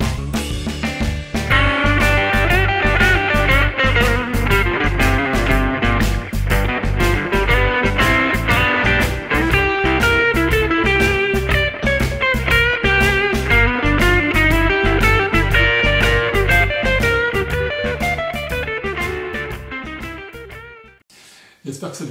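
Electric blues guitar solo on a Telecaster-style guitar, mixing single-note blues-scale lines and chord arpeggios in G, over a backing track with a steady drum beat and bass. The music fades out and stops about a second before the end.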